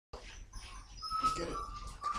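Puppy whining in thin, high, drawn-out tones, starting about halfway through.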